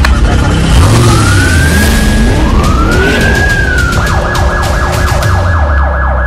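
Police siren sound effect: two slow rising-and-falling wails, then a rapid yelping warble from about four seconds in, over a deep rumble and a noisy rushing layer, cutting off at the end.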